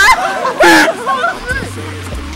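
People talking and laughing over background music, with one loud vocal outburst a little past halfway through.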